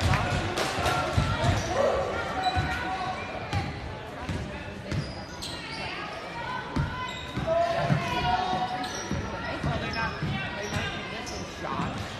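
Basketball being dribbled on a hardwood gym floor, about two bounces a second, under the chatter and shouts of players and spectators.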